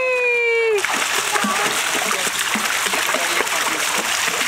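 Swimming-pool water splashing as a man and a toddler move in it, a steady wash of splashes that takes over about a second in.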